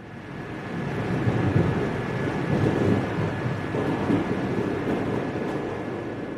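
A steady low rumble of noise, like a running vehicle or traffic, with a faint high steady tone above it. It fades in over the first second.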